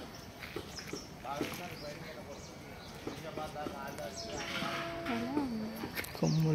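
People's voices talking in the background, with a long drawn-out vocal call from about four seconds in that dips and rises in pitch at its end.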